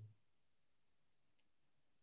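Near silence between sentences, broken by one faint, very short click about a second in.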